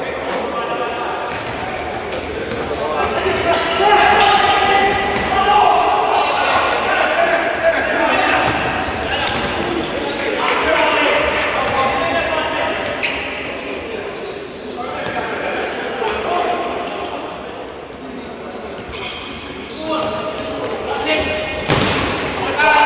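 Futsal ball being kicked and bouncing on a hard indoor court, sharp thuds echoing around a large hall, over voices. The loudest thud comes just before the end.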